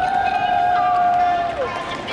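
A high voice holding one long, nearly level 'aah' of about a second and a half, which dips in pitch and breaks off near the end, with the hum of a busy space behind it.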